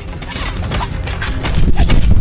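Movie fight-scene sound effects: a quick run of sharp weapon clacks and hits. A deep rumble grows louder about one and a half seconds in.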